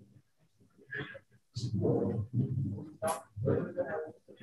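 Indistinct voices talking, quieter than the speech at the microphone and broken into short phrases.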